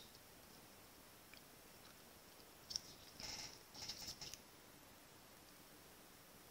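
Near silence, with a few faint rustles and light taps about halfway through from hands handling paper strips and a thin metal circle die.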